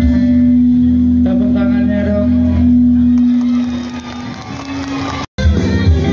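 Live band music with guitar, played loud through a stage sound system. A held note fades away about four seconds in; after a sudden brief dropout, the band's music starts again at full level.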